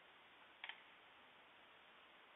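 Near silence: a faint steady hiss, with one brief click about two-thirds of a second in.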